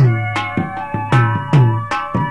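Instrumental passage of a Kutchi folk song: regular drum strokes, each with a booming low decay, about two a second, over steady held melodic tones.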